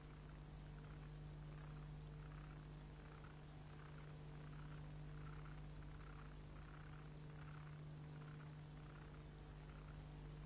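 Faint steady electrical hum with hiss, the empty noise of blank video tape playback, with a soft swish repeating about every 0.7 seconds.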